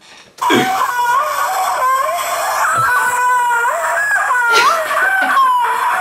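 A high voice wailing in long held, sung notes that slide from one pitch to another, starting about half a second in.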